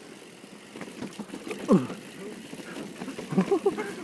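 Mountain bike descending a rough dirt trail: tyres rolling over dirt and the bike rattling over the bumps, with a rider's falling shout of "oh!" about two seconds in.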